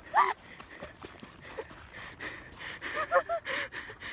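A woman's short startled cry of "ah!" as she slips on an icy path, then quick scrambling footsteps on ice and snow, with breathless gasping laughter about three seconds in.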